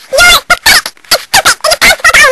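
A person's voice making loud, wordless, warbling sounds in a string of about five short bursts.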